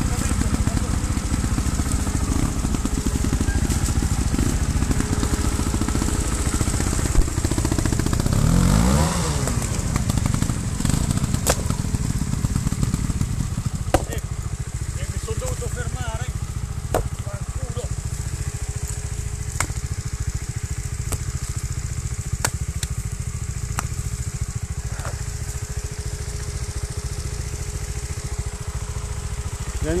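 Trials motorcycle engine idling, with one rev rising and falling about nine seconds in and the engine running more quietly in the second half. A few sharp knocks are scattered through.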